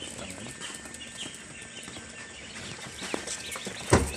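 A brood of newly hatched Pekin ducklings peeping, many short high chirps overlapping continuously, with a few faint clicks among them.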